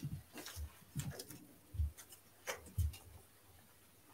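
About half a dozen faint, irregular clicks and soft knocks of small objects being handled at the draw table.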